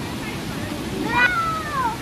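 A single high call about a second in, rising sharply and then sliding slowly down in pitch, over the steady rush of river water.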